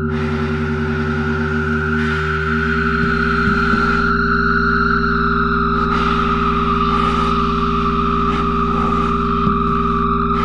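Improvised experimental music for baritone saxophone and effects-processed electric guitar: layered held drones, with a high tone slowly sinking in pitch over steady low tones and a fast pulsing note.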